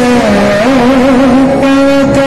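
Loud music holding one long note that dips in pitch shortly after the start and then wavers up and down.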